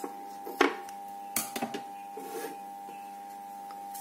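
Scissors snipping through a strip of floral tape about half a second in, followed by a few light clicks and rustles as the tape is handled, over a steady background hum.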